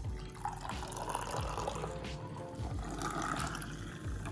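Apple juice pouring in a steady stream from a carton spout into a glass, filling it.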